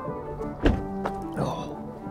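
A pickup truck's driver door shut with one heavy thunk a little over half a second in, followed by a softer knock, over steady background music.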